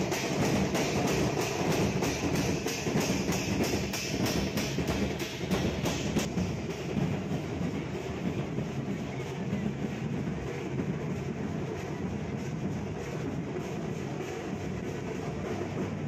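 A group of stick-beaten procession drums plays a fast, steady beat that fades out about six seconds in. A steady low rumble of crowd and engine noise is left.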